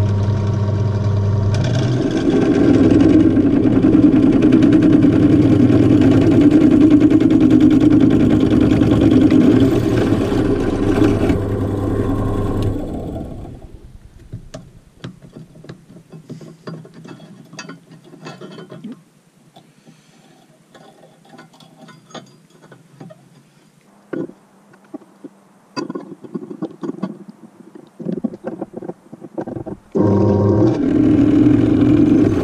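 Bench drill press running with a 7 mm bit drilling into a clamped copper busbar, louder while the bit is cutting, then the motor spins down about 13 seconds in. After that come scattered light clicks and knocks as the clamp and the copper bar are handled.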